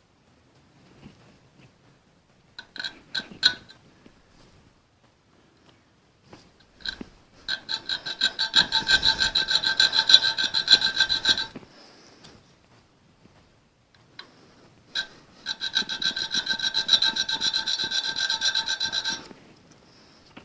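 Small square file cutting a V-notch timing mark for top dead centre into the rim of a Ford flathead V8's crankshaft pulley. A few short strokes come first, then two long runs of quick back-and-forth strokes, several a second, with the metal pulley ringing under the file.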